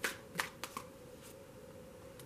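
A tarot deck handled by hand, shuffled as a card is drawn: four quick, sharp card snaps in the first second.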